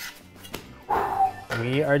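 A short scrape about a second in, as a metal pizza peel slides a cooked pizza off onto a plate, over background music.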